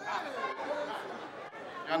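Indistinct chatter of voices in an event hall, quieter than the microphone speech around it, with one word spoken near the end.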